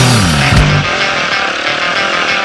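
Dirt bike engine running, its pitch falling in the first half-second, mixed with rock music.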